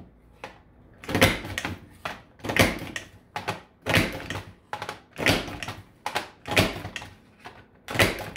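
Creative Memories Border Maker punch with the Pyramid Keyhole cartridge pressed down through teal cardstock six times, about one sharp click every 1.3 seconds. The punch is stepped along the paper guide between strokes.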